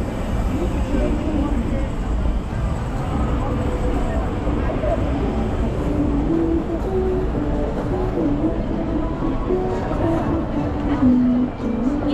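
Busy city street ambience: the chatter of passers-by over a low rumble of traffic, with music playing, its melody clearest in the second half.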